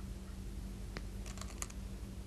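Go stones clicking on a wooden Go board as they are placed and shifted by hand: one sharp click about a second in, then a quick run of light clicks.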